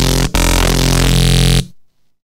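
Xfer Serum software synthesizer playing a neuro bass patch built on a wavetable imported from a PNG image. A short note is followed by a longer one whose timbre shifts as it sounds, and it cuts off about a second and a half in.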